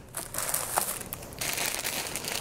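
Clear plastic bag crinkling and rustling as it is picked up and handled, with small irregular crackles.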